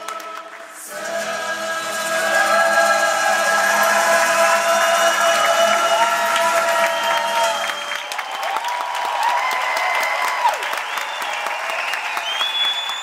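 A stage cast sings a sertanejo song together, with acoustic guitars and an accordion, while the audience claps throughout. The low accompaniment drops out about eight seconds in, leaving long held, sliding sung notes over the applause.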